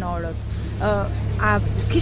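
A voice speaking in short phrases with pauses, over a steady low rumble.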